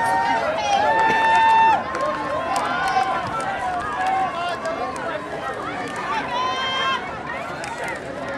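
Several spectators shouting and cheering for runners going by on a track, voices overlapping, with a long drawn-out yell about a second in and another near the end.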